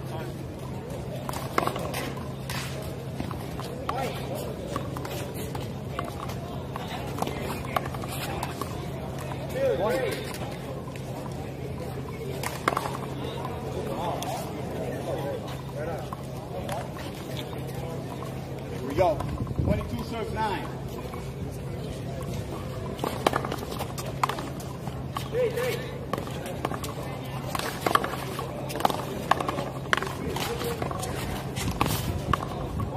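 Outdoor wall-court ambience with voices in the background and a steady low hum. Near the end comes a quick run of sharp slaps, a small rubber ball struck by hand and rebounding off the concrete wall and court during a rally.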